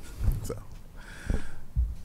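A handheld microphone being handled, giving a few dull low bumps around a single short spoken 'so'.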